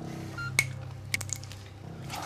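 A single short electronic beep from a medical monitor, followed by two sharp clicks of equipment being handled, over a low steady hum.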